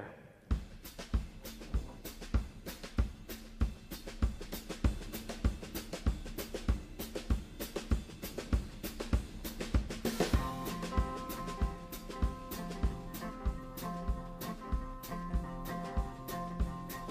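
Drum kit playing a steady beat alone to open a song, with snare, bass drum and cymbals; about ten seconds in, other instruments come in with sustained pitched notes over the beat.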